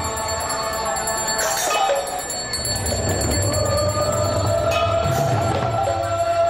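Devotional aroti music: khol (mridanga) drums being played along with continuous ringing of bells and metal percussion. A long held note enters about halfway through and rises slightly.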